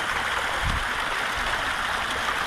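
Steady rushing and splashing of churned water in a densely stocked fish pond, with a low bump about two-thirds of a second in.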